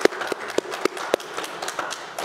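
Audience applauding, with individual hand claps standing out.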